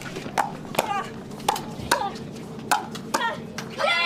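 Pickleball paddles striking a plastic ball in a fast rally: a string of sharp pops at irregular intervals, roughly every half second to second, each with a brief falling ring.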